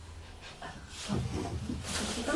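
Listeners chuckling and laughing at a joke, starting softly about a second in.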